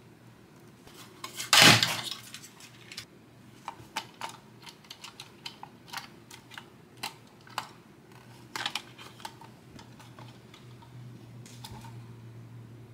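Small plastic clicks and taps from the 1/24-scale RC crawler trucks being handled and turned in the hands, with one loud knock about a second and a half in.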